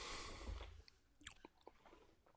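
Quiet pause at a podcast microphone: a soft breath-like rush at the start, then near silence with a few faint mouth clicks.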